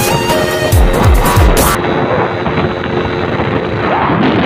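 Music with deep, falling bass drum hits that cuts off suddenly about two seconds in, leaving wind and road noise from a moving vehicle.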